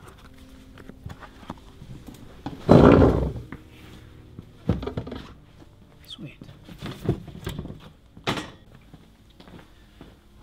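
Knocks, thuds and shuffling of people and chairs moving around tables in a small room, with scattered wordless vocal sounds. A loud burst about three seconds in is the loudest moment, and sharper thuds follow near five, seven and eight seconds.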